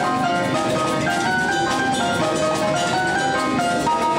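Live jazz band with Latin percussion playing: a vibraphone melody of held notes stepping up and down over piano, bass, congas, bongos and drum kit.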